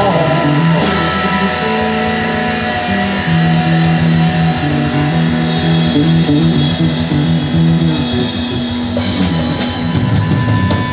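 Live blues band playing an instrumental stretch without vocals: electric guitars and bass guitar over a drum kit.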